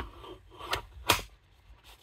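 ESEE Junglas knife drawn from a double-layer Kydex sheath: the rigid plastic clicks as the knife pops past the retention, and the blade scrapes along the Kydex. Three short sharp clicks come in about a second, the last the loudest, with faint rubbing between.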